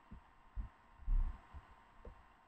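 A few soft, low thumps, the loudest just after a second in, over faint steady background hum.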